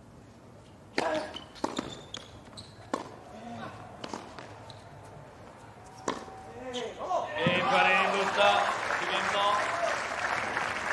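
Tennis rally: a serve and a string of sharp racket strikes on the ball over about five seconds. After the point ends, the crowd cheers and applauds, with many voices shouting at once, louder than the rally.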